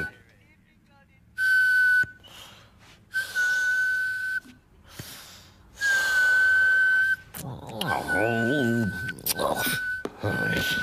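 A high whistle held on one pitch, sounding in about five breathy bursts of a second or so each with short pauses between, like air whistling through a gap in the front teeth. A short wavering vocal murmur comes near the end.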